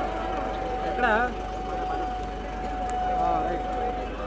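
Crowd of men calling and talking around a vehicle, the loudest call about a second in, over a steady single high-pitched tone.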